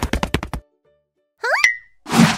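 Cartoon sound effects: a rapid run of clicks for about half a second, a moment of silence, then a quick upward glide in pitch that ends in a short held tone.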